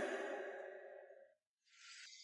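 A soft noisy tail fades away within about a second, followed by a brief silence. Near the end a steady high hiss of water ambience starts.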